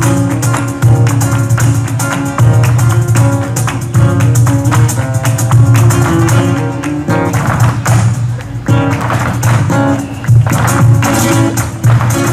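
Live flamenco music: a Spanish guitar playing under a dense run of sharp percussive strikes from the dancers' footwork on the stage.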